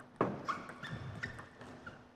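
Table tennis rally: the ball clicking off the players' bats and bouncing on the table in a quick series of sharp clicks, about three a second, the loudest near the start.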